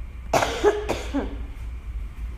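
A woman coughing: two sharp coughs close together about a third of a second in, followed by a short voiced throat sound.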